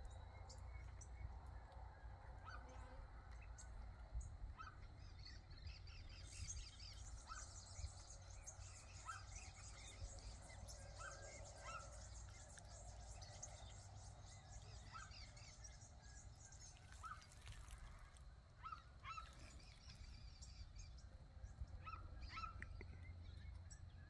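Faint scattered short bird chirps over quiet outdoor ambience with a steady low rumble, with a faint high chatter through the middle stretch.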